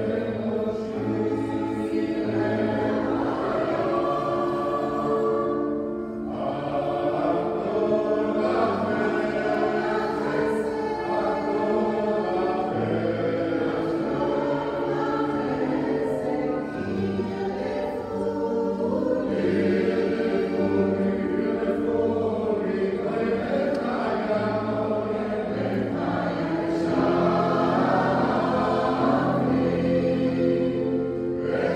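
Mixed choir of men's and women's voices singing sustained chords in slow-moving parts, with a short break in the singing about six seconds in.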